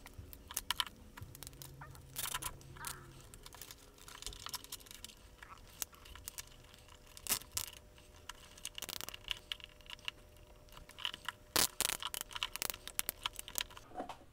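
Quiet, irregular clicks and rustles of hands fitting aluminium-foil strips around a plastic beaker and threading black cable ties, with runs of quick clicks as a cable tie is pulled through its ratchet head, densest near the end.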